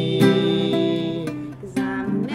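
Acoustic guitar strummed: a chord struck just after the start rings and fades, and another strum comes in near the end.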